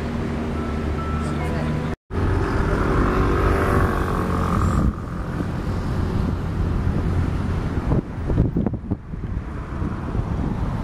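Outboard motor of a small canal tourist boat running steadily, with wind and water noise. The sound drops out for a moment about two seconds in, and a voice is heard over the engine for a few seconds after that.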